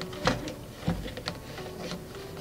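White plastic socket being screwed by hand into the threaded hole of a blue plastic water container: several small, irregular clicks and scrapes of plastic on plastic.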